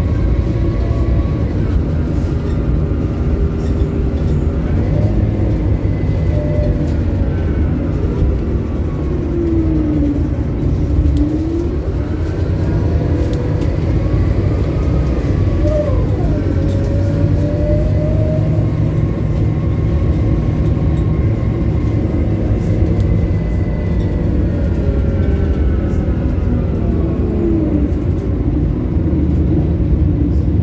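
Scania K280UB city bus heard from inside the cabin while under way: its rear-mounted diesel engine and drivetrain running with a steady low rumble, overlaid by faint whining tones that fall and rise in pitch a few times as the bus slows and picks up speed.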